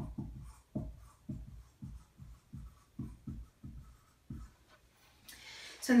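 Dry-erase marker writing a word on a whiteboard: a quick run of short strokes for about four and a half seconds, then it stops.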